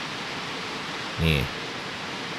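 Heavy rain falling, a steady, even hiss.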